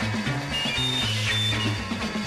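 Instrumental rock-and-roll style jingle music from a 1960s Kaiser Foil radio commercial record. A bass line steps from note to note under a few short high notes.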